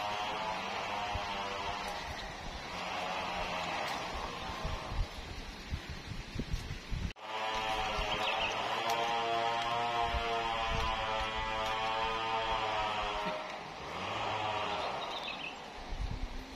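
An engine running steadily, rising and easing in spells of a few seconds, with an abrupt break about seven seconds in.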